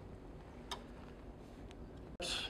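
A single light, sharp click about two-thirds of a second in, then a fainter tick near the end, over a low steady room hum.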